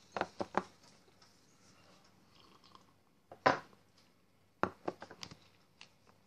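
Close-up mouth sounds of a man chewing boiled sausage (sardelka): short wet clicks and smacks, three in quick succession at the start, a louder one about three and a half seconds in, and a quick cluster a second later.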